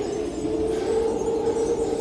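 A sustained, ominous drone from the suspense score, made of two steady held low-pitched tones over a faint low rumble.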